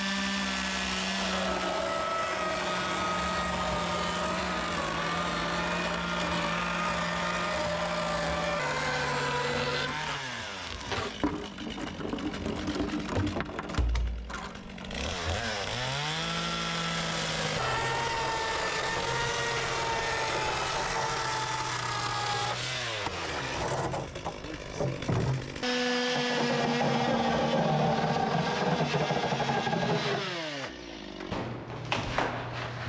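Two-stroke chainsaw running at high speed while cutting into a plastic barrel, its engine note dropping and climbing back up a few times as the throttle is eased off and opened again.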